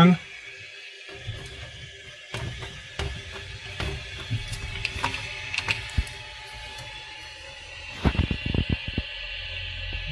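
Hand handling noise at a 3D printer's multi-material unit while a filament is drawn out: low rustling and scattered clicks, with a quick run of sharp clicks about eight seconds in, over a faint steady hum.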